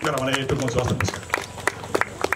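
A man's voice through a PA microphone for the first moment, then scattered hand claps from a few people, irregular and sparse, starting about a second in.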